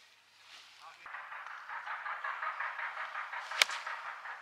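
Pitching wedge striking a golf ball once, a single sharp click about three and a half seconds in, over a steady background chatter.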